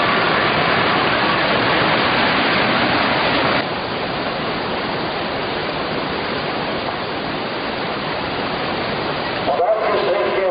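Whitewater rapids rushing in a steady loud wash of noise; about three and a half seconds in it drops to a somewhat quieter, duller rush.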